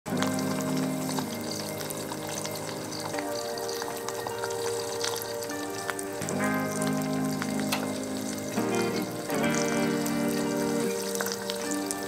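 Soft background music of held chords that change every second or two, over an egg sizzling with small crackles in a cast iron skillet.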